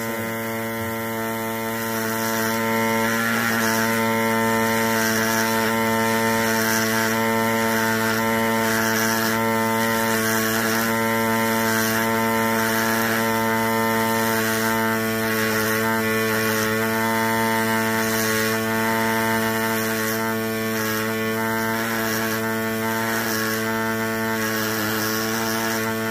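Pneumatic air scribe buzzing steadily as it chips away rock matrix from a fossil, a constant pitched hum with a hiss over it.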